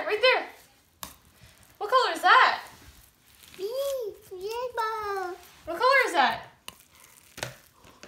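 A young child's high-pitched voice making short sing-song vocal sounds without clear words, with faint clicks and crackling from hands and a metal scoop digging in slime between them.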